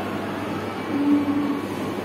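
Steady low rumbling background noise with a low hum, and a short held tone about a second in.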